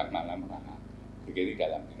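A man's voice in two short spoken fragments, near the start and about a second and a half in, over a steady low electrical hum.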